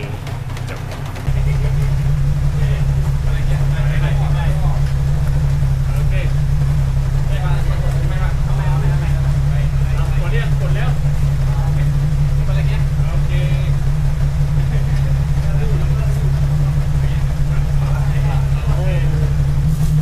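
A steady low mechanical hum that steps up in level about a second in and then holds, with faint voices in the background.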